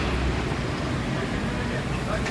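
Steady outdoor background noise with a low rumble and faint voices.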